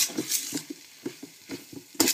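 A metal spoon stirring and scraping through a moist pork-and-vegetable filling in a stainless steel wok, in a quick run of irregular strokes, as beaten egg is mixed through off the heat.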